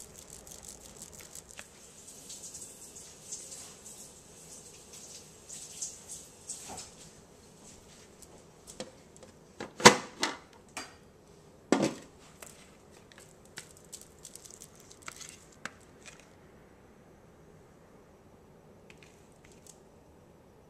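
Wire whisk stirring a thin powdered-sugar glaze in a plastic mixing bowl: a quick scratchy scraping with light clicks. About ten seconds in come two loud plastic knocks as a clear plastic cake-dome cover is handled, followed by a few softer clicks.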